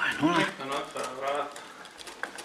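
A person's voice, a short utterance of about a second and a half that is not clear enough to make out.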